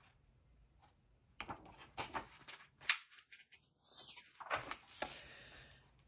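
Faint handling of a picture book's paper pages: a scatter of short rustles and taps begins about a second and a half in and dies away near the end.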